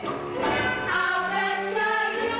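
A women's ensemble singing together over a live band, holding long notes.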